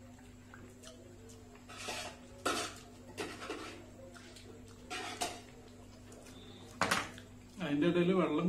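Eating sounds of biryani being eaten by hand: scattered chewing and mouth noises with a couple of sharp clinks of crockery, over a steady low hum. A man starts speaking near the end.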